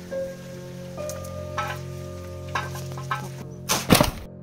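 Dry garlic skins crackling as cloves are peeled and broken apart by hand, a few short sharp crackles about a second apart, with a louder clatter near the end, over steady background music.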